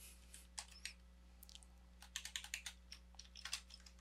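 Faint typing on a computer keyboard: several short runs of key clicks, over a steady low hum.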